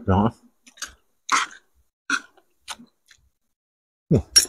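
Close-up chewing by people eating, heard as a handful of short, sharp sounds spread across a few seconds.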